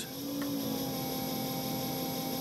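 Brushless e-scooter hub motor spinning with no load, driven by a Kelly KBS72151E controller: a steady electric hum with a faint high whine, its pitch settling slightly at the start. It is running smoothly.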